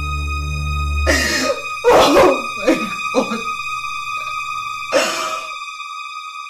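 A woman sobbing in short, choked bursts, about five times, over sustained background music; a low drone in the music drops out after a second and a half.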